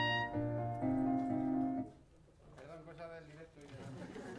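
A reed woodwind and a piano play the closing held notes of a piece together, ending on a sustained final note that stops about two seconds in. Faint voices follow.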